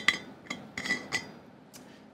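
Screw-on lid being twisted off an insulated water bottle with a metal rim and internal threads: several light metallic clicks and clinks, one or two ringing briefly, dying away in the second half.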